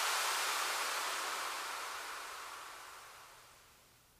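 Closing noise sweep of an electronic dance track: a wash of white noise fading out steadily, its brightness sinking as it dies away.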